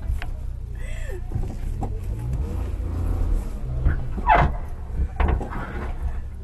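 Suzuki Jimny engine running and revving in deep mud, the rumble rising in pitch and falling back. Two brief louder sharp sounds come near the end.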